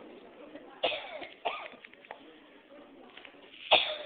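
A person's voice in three short, sudden bursts, the loudest near the end, over faint voices in the room.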